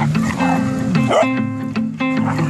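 Guitar background music, with a dog barking twice during rough play-fighting, about half a second in and again past the one-second mark.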